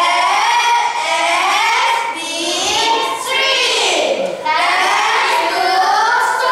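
A group of children singing together, with one phrase sliding down in pitch about four seconds in.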